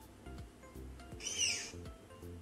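A tapir's short, shrill whistling squeal, heard once about a second in, that arches up and then falls away in pitch, over quiet background music.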